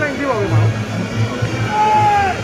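Reog Ponorogo gamelan music amid a crowd: a low drum beat pulsing steadily under voices, and near the end a single long held note that bends downward as it ends, typical of the slompret shawm that leads Reog music.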